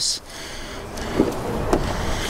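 Driver's door of a 2014 Ford Focus SE being opened: a sharp click of the handle and latch at the start, then a steady rustling noise as the door swings open.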